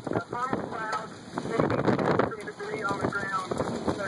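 Indistinct voices over a steady rush of wind noise on the microphone.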